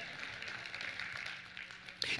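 Faint applause from a congregation, dying away about a second and a half in.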